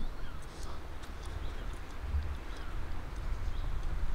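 Outdoor ambience: a steady low rumble with faint, scattered bird calls.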